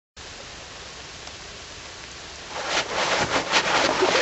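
Steady hiss, then from about two and a half seconds in a run of irregular crunching and rustling noises that grow louder.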